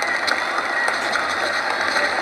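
Ballpark crowd noise: a steady wash of many voices chattering at once, with no single voice standing out.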